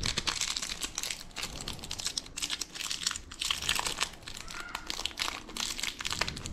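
Thin plastic wrapper crinkling as it is peeled off a detailing clay bar by hand, a dense, irregular run of small crackles.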